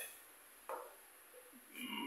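Mostly quiet room tone while a label is read: a man's held, wordless voice fades out at the start, a short faint noise comes a little under a second in, and his voice begins again near the end.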